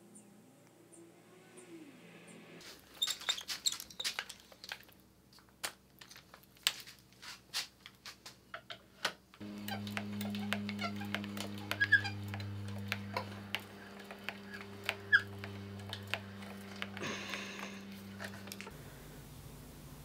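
Scattered light clicks and taps of small objects being handled. From about nine seconds in a steady low hum joins them, with a short hiss near the end.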